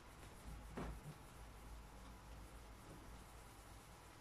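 Faint rubbing of a cloth over a bare ebony fingerboard as excess lemon oil is wiped off and the wood buffed, with a slightly louder stroke about a second in; otherwise near silence.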